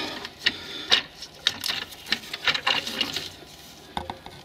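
A run of irregular clicks and light knocks of metal and plastic as the Electronic Brake Control Module is pried up from its mount.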